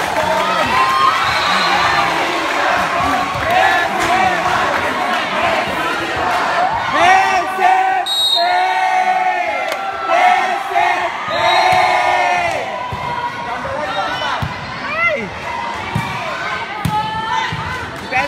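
Spectators cheering and shouting, many of the voices high and childlike, with the sharp thuds of a volleyball being hit now and then.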